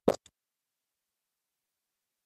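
A short click right at the start, with a brief burst after it, then dead silence.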